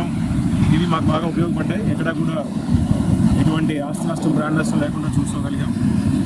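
A man speaking into interview microphones, over a steady low rumble.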